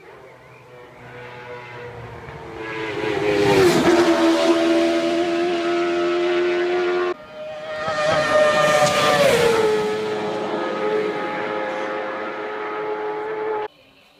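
Two road-racing motorcycles passing at high speed, one about four seconds in and one about nine seconds in, each engine note dropping sharply in pitch as the bike goes by. The sound cuts off abruptly between the passes and again near the end.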